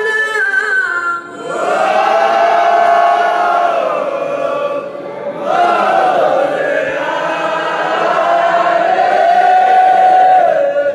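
A group of men chanting in unison, a Mawlid recitation sung in long, drawn-out melodic phrases with short breaks about a second in and about five seconds in.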